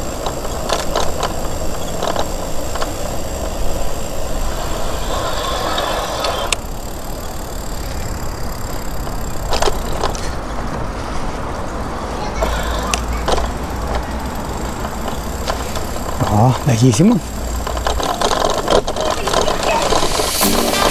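Riding noise from a camera on a moving bicycle: steady wind rumble on the microphone and tyres rolling over asphalt and then brick paving, with occasional knocks and rattles. A man says a word near the end.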